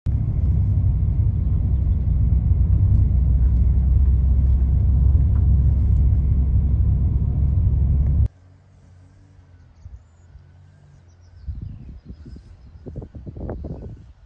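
Heavy low rumble of wind buffeting the microphone, cutting off suddenly about eight seconds in. After that comes a quieter stretch broken by irregular gusts of wind rumble on the microphone.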